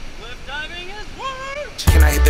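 Voices calling out in long, rising and falling shouts over a low rumble of wind and sea. Loud hip-hop music cuts in suddenly near the end.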